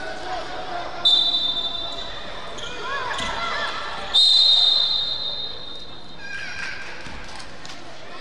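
Referee's whistle blown twice, each a long shrill blast, the first about a second in and the second about four seconds in. A basketball bounces and children's voices are heard around them.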